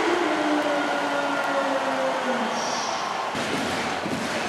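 Large arena crowd cheering, with many voices holding a long chanted note that drifts slowly down in pitch.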